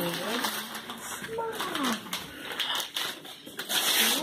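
Children's voices murmuring over the crackle and tearing of wrapping paper as a present is unwrapped.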